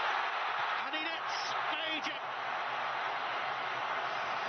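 Steady noise of a large football stadium crowd, with short voice-like calls about one and two seconds in.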